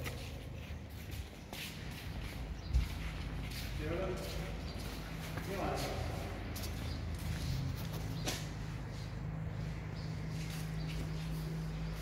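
Faint voices in the background over a steady low hum, with a few sharp knocks.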